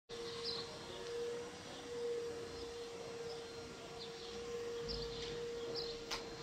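Quiet room ambience: a steady, unchanging tone held throughout, with faint, short, high, bird-like chirps now and then.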